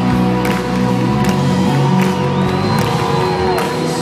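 Live band playing an instrumental passage, with drum hits over sustained keyboard and guitar chords, heard from within a cheering concert crowd.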